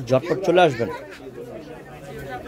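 A voice speaking for about the first second, then fainter background chatter of several voices for the rest.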